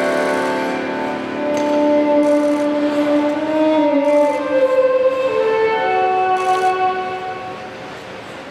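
Slow instrumental program music with long held, string-led notes moving in a gentle melody, growing quieter near the end.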